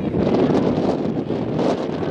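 Wind buffeting the microphone: a loud, uneven rushing noise with no distinct tones.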